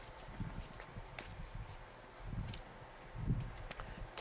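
Faint handling of a deck of cards being shuffled in the hands: a few soft low thumps and light clicks.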